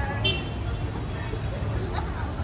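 Night street ambience: a steady low rumble of traffic with indistinct voices of people passing, and a brief high-pitched tone about a quarter second in.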